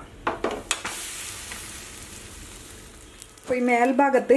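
A hot flat tawa sizzling: a sudden hiss starts about a second in and fades away over the next couple of seconds.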